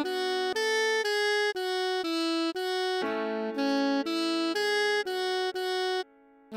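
Alto saxophone playing a melody slowly, at half speed. It plays a steady run of single held notes, about two a second, stepping up and down in pitch.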